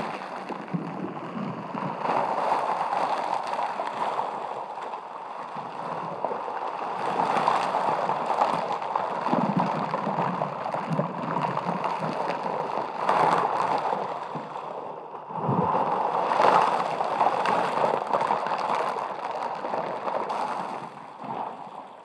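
Close-miked rubbing and swishing of a soft brush-like tool against a silicone microphone cover, a continuous textured sound that swells and eases with the strokes and fades near the end.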